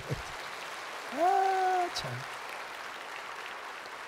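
A large church congregation applauding, a steady spread of clapping, with one brief drawn-out voice about a second in.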